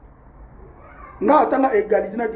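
A man's voice: a pause of about a second, then he starts speaking again with a drawn-out, rising-and-falling sound.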